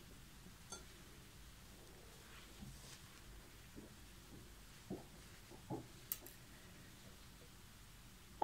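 Near silence: room tone with a few faint, short clicks and rustles from handling the crochet work.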